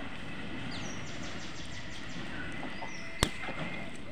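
Outdoor ambience: a steady background hiss with faint high chirps in the first half and a faint steady high tone. One sharp click about three seconds in is the loudest sound.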